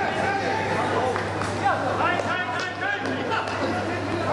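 Many people's voices talking and calling over one another in indistinct chatter, over a steady low hum, with one sharp knock about a second and a half in.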